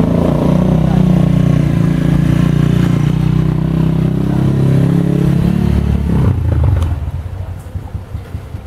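Small motorcycle engine running loud and close, with a steady low hum, that drops away about six seconds in.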